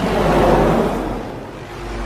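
Helicopter flying past: a rushing rotor and engine noise that starts suddenly, swells about half a second in and then fades, over a steady low hum.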